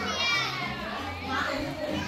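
Young children's voices chattering and calling out, with a high child's voice near the start over a general babble.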